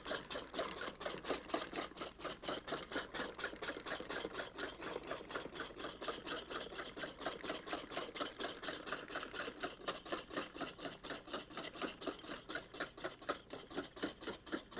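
Large wire balloon whisk beating heavy cream in a stainless steel bowl, a steady rhythm of strokes, about five a second. It is hand-whipping cream over ice for crème chantilly.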